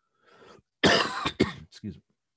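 A man coughing: a faint intake of breath, then one loud cough about a second in, followed by two shorter ones.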